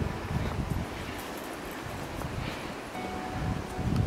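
Wind rustling through the trees and buffeting the microphone, a fairly steady noisy rush with gusty low rumbling.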